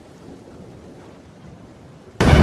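Soft, steady rain falling on a wet street, an even hiss with a low rumble beneath it.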